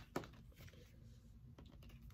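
Faint, sparse clicks of a tarot deck being handled, cards snapping against each other in the hand.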